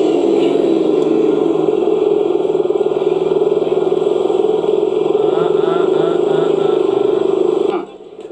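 A voice speaking over a steady motorcycle engine, both cutting off abruptly just before the end.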